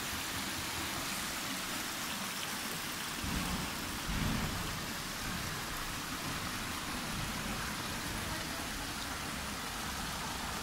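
A small stream rushing down channels in sloping rock, a steady hiss of running water. Low bumps stand out about three and four seconds in.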